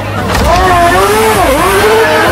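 Open-wheel race car engine being revved, its pitch swinging up and down in repeated rises and falls, with a deep dip about a second and a half in.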